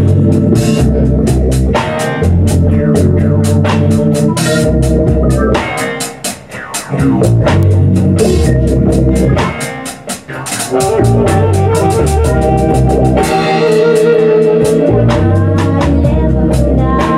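A live band plays loud music with a beat: repeating low bass notes, sustained notes and regular drum strikes. The sound thins out briefly twice, about six and ten seconds in.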